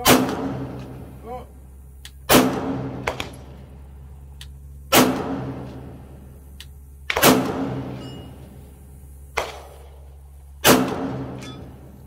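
A handgun fired in slow, aimed single shots, about one every two to two and a half seconds, five loud shots in all, each with a short echo trailing off. A fainter shot comes between the last two.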